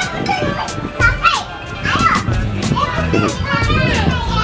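Children's voices at play, high and chattering, over background music with a steady beat.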